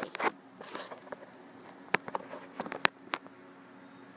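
Irregular light clicks and taps from close-up handling, some single and some in quick runs of three or four, over a faint steady room hum.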